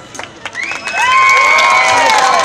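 A live blues band breaks off into a short stop. In the gap, one long high note slides up, holds for over a second and falls away at the end, over faint crowd noise.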